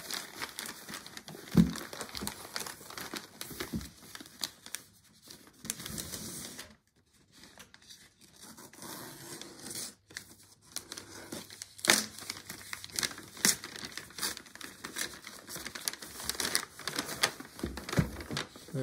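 Brown kraft paper wrapping being torn and crumpled by hand, in irregular rustles and rips, with a couple of sharper, louder sounds about a second and a half in and around the middle and a brief lull a little before halfway.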